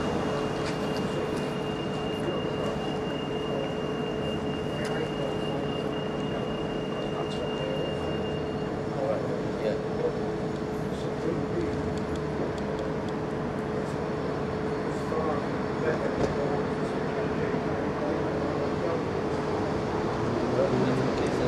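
Steady outdoor street noise: a continuous hum with a steady droning tone, and a higher whine over it for the first eight seconds or so, with low voices under it.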